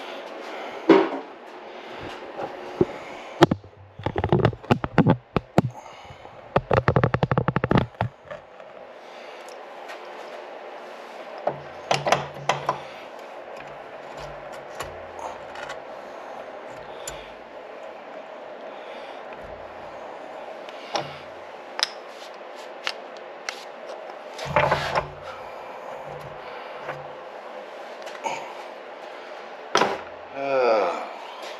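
Clicks, clinks and light scrapes of parts of a Yamaha G2 golf cart engine being handled, with its cylinder off and the piston exposed. A dense run of clicking comes a few seconds in, then scattered knocks, all over a steady background hum.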